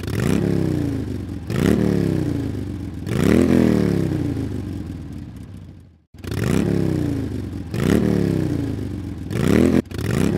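An engine revving over and over, each rev climbing quickly in pitch and then sinking away, about every second and a half. It cuts out briefly about six seconds in.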